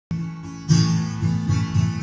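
Acoustic guitar strummed through the opening chords of a song's intro, with a loud strum about two-thirds of a second in.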